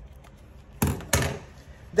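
Two short knocks about a third of a second apart, from raw chicken being handled over a stainless steel kitchen sink.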